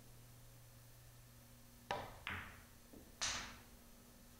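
A pool shot struck with heavy spin: the cue tip hits the cue ball about two seconds in, then sharp clicks of billiard balls colliding follow over about a second and a half, the last click the loudest.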